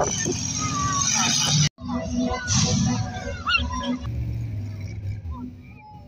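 Monster truck and vehicle engines running in the arena, mixed with voices and crowd noise. The sound cuts out abruptly for an instant a little under two seconds in.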